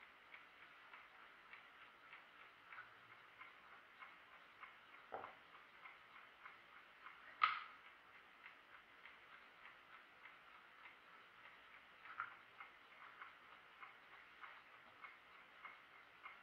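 Jantar mechanical chess clock ticking faintly and evenly, with a few louder sharp clacks as wooden chessmen are set down and the clock is pressed, the loudest about halfway through.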